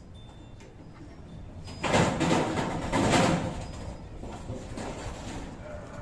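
A long-span corrugated metal roofing sheet scraping and rumbling as it is slid across the roof purlins. It is loudest for about a second and a half from two seconds in, then settles to a lower rumble.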